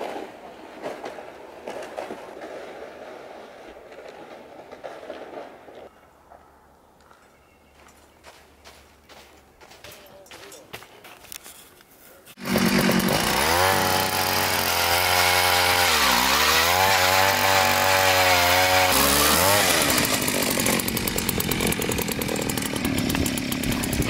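Small two-stroke gas ice auger running hard and drilling down through lake ice, its engine note sagging and recovering as the bit bites. It starts abruptly about halfway through, after a quieter stretch.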